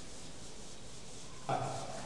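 Chalkboard duster wiping chalk off a chalkboard: a faint, steady rubbing, with a brief louder sound near the end.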